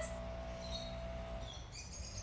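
Faint, short bird chirps over a low steady background rumble.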